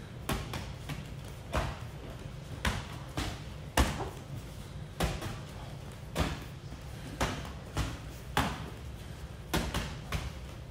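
Gloved punches and kicks landing on a partner who catches, covers and checks them: a string of sharp smacks about every half second to second, the loudest about four seconds in.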